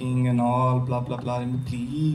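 A man's voice into a microphone, drawing out his words on a long, steady low pitch so that it sounds almost chanted, breaking off about a second and a half in.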